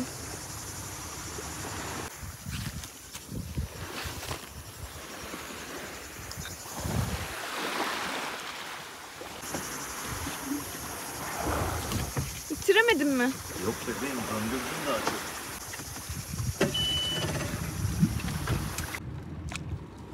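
Small open motorboat on the water: uneven wind and water noise with irregular low rumbles, and a short voice a little past the middle.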